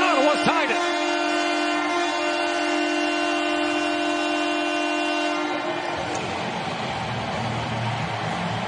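Ottawa Senators arena goal horn sounding after a goal: one long steady horn blast that cuts off about five and a half seconds in, followed by a steady wash of noise.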